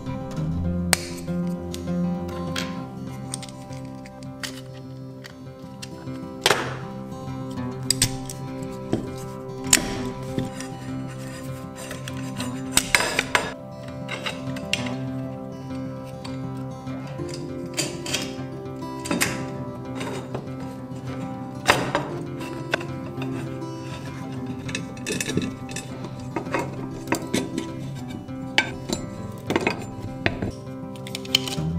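Background music with scattered light metallic clinks and knocks throughout: steel screws and nuts and aluminium extrusion profiles being handled while 3D-printed brackets are screwed onto an aluminium frame.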